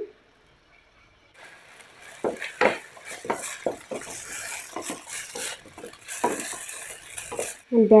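Pork pieces sizzling in a frying pan while a wooden spatula stirs them, with repeated scrapes and knocks against the pan. It starts about a second and a half in.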